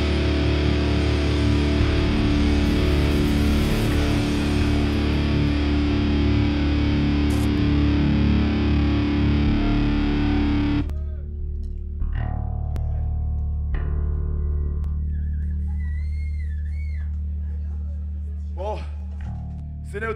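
Live heavy metal band playing loud, distorted electric guitar music, which cuts off abruptly about eleven seconds in. After that comes a steady amplifier hum with a few ringing guitar notes and scattered shouts between songs.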